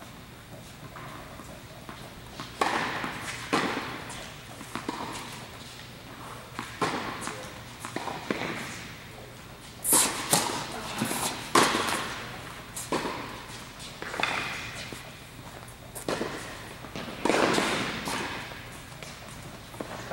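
Tennis ball being struck by rackets and bouncing on a hard court in a large indoor hall. A sharp serve about ten seconds in is followed by a rally of separate hits and bounces. A few single knocks come earlier, before the serve.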